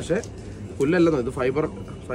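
A man's voice speaking a short phrase, starting about a second in.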